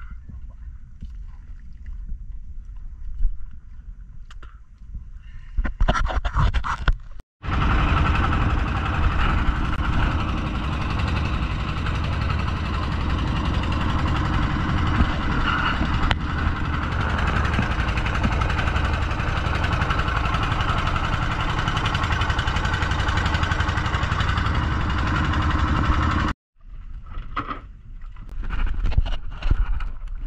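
Small boat under motor power running at speed: a steady engine drone mixed with rushing wind and water. It starts suddenly after several seconds of low rumble and cuts off abruptly a few seconds before the end.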